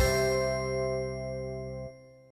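Last bell-like chime of a TV programme's logo jingle, struck once at the start and ringing on as a held chord of several tones that slowly fades away.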